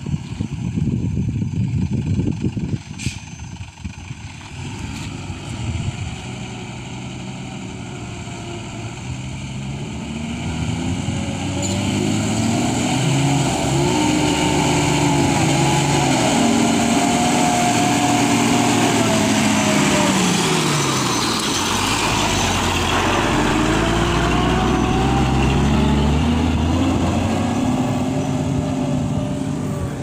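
Mitsubishi truck's diesel engine labouring as the truck crawls along a rutted dirt road and passes close by, its pitch rising and falling several times as it pulls through the ruts. Wind buffets the microphone at the start.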